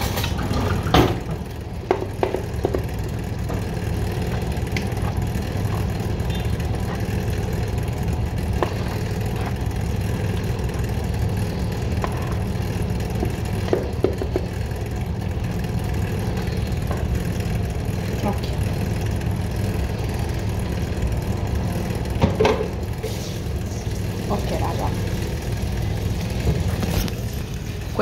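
A steady low hum like a running motor, with a few light knocks and scrapes from a plastic mixing bowl as chocolate cake batter is emptied into a cake pan.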